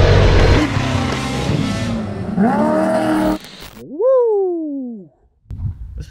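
Off-road race vehicle engine at full throttle, mixed with dirt and tyre noise. Midway a rev climbs and holds, and after a short break a single rev rises and falls away, followed by a moment of near silence.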